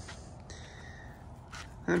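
Quiet outdoor ambience: a faint, steady background with no distinct sound events. A man's voice begins right at the end.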